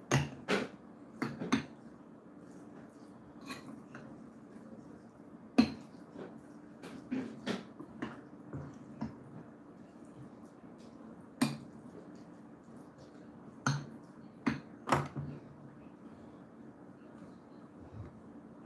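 A metal fork clinking against a glass bowl in about a dozen irregular sharp strikes as a chicken salad is stirred.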